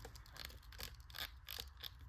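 Faint, irregular clicks and handling rubs from an action figure's foot and toe joints being worked back and forth by hand.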